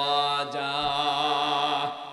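A man's voice chanting one long held note with a slight waver, sung into a microphone, breaking off just before the end.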